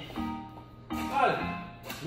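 Background music with repeated chords, and a man's voice calling out once over it.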